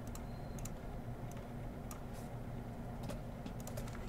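Scattered, irregular clicks of typing on a computer keyboard, over a low steady hum.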